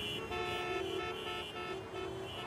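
Car horns honking in a traffic jam: several overlapping steady horn blasts of slightly different pitches, starting and stopping.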